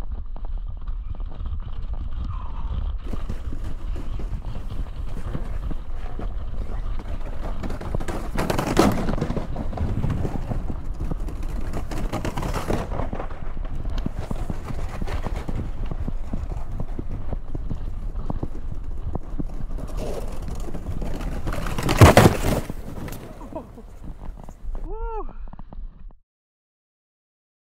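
Luge sled runners sliding fast down an iced track: a continuous rough rumble and scrape with wind on the microphone, a sharp knock about nine seconds in and the loudest jolt near the end as the sled comes off into the snow. A short vocal cry from the rider just before the end.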